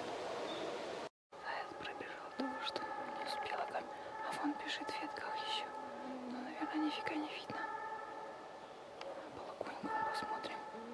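Russian hounds giving tongue on a hare's trail, heard at a distance as a series of long, drawn-out howling notes, one after another. A brief dropout about a second in.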